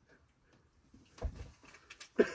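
Mostly quiet, with one dull thump a little past the middle, followed by a few faint clicks.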